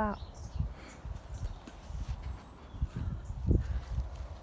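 Irregular low thumps and rustling from a hand-held phone being moved about while a sprig of parsley is picked from a garden bed, with one louder knock about three and a half seconds in.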